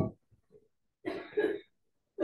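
A person coughs once, a short, rough cough about a second in.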